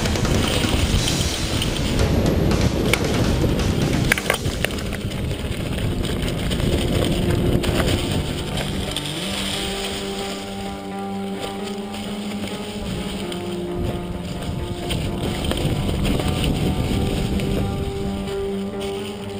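Background music with long held notes, laid over rushing wind noise and the clatter of a mountain bike riding down a rough trail. The wind and rattle are loudest in the first half; the music stands out more in the second half.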